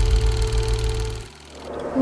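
Cinematic intro sound design: a deep low rumble and a single steady held tone over a fast, even mechanical ticking like a film projector running. It all fades out about a second and a half in.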